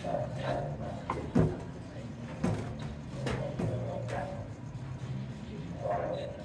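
Bowling alley din: background music and voices, broken by sharp knocks, the loudest about a second and a half in and another about a second later.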